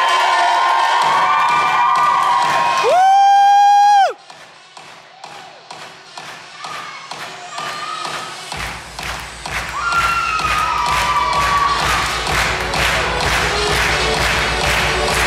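Audience cheering and children shouting over the dance music, then a loud held tone that swoops up and cuts off abruptly about four seconds in. The music drops to a quieter, evenly ticking beat, and a deep bass comes in a little past halfway.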